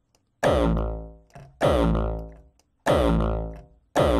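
Distorted hardcore kick drum, synthesized in Microtonic and run through FilterBank3's low-pass and band-pass filters and tube-amp distortion with the drive a little below full, playing four hits about 1.2 s apart. Each hit has a sharp attack and a quickly falling pitch, then a long distorted low tail. The reduced drive gives it a warm rather than harsh character.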